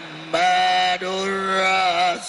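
A man chanting Islamic dhikr into a microphone, holding two long, drawn-out melodic notes.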